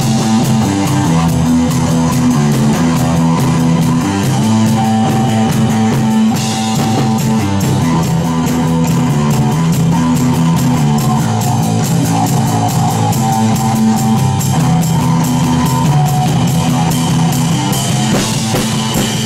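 Punk rock band playing: electric guitar, bass guitar and a drum kit keeping a steady beat.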